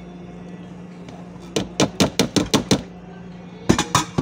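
A small container of flour knocked against the rim of a food processor bowl to shake the flour out: a quick run of about seven knocks in just over a second, then two or three more near the end.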